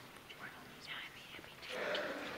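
Hushed voices of people talking quietly, one voice louder near the end, with a few soft clicks.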